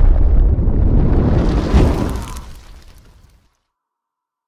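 A loud explosion sound effect with a deep rumble for a fireball intro animation. It swells once more a little under two seconds in, then dies away, gone by about three and a half seconds.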